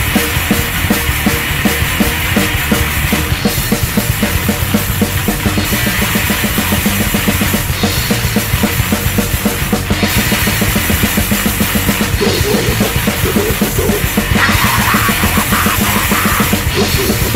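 Hardcore punk band playing an instrumental passage: fast drumming under distorted guitar and bass, with a cymbal crash about every two seconds.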